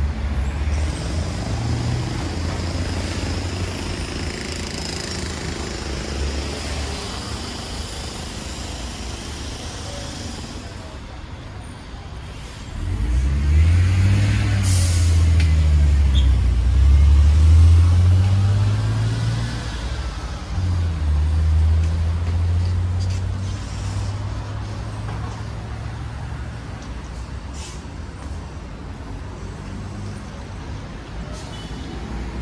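Street traffic with a city bus engine running close by, growing loud a little before halfway through, its pitch rising and falling as it pulls away, with a short air-brake hiss early in that loud stretch.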